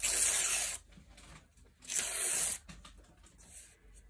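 Plain computer paper being torn by hand into long strips: two long tears, each under a second and about two seconds apart, with faint paper handling between them.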